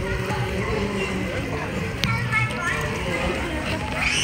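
Indistinct voices and background music, with light splashing from a child swimming in a pool.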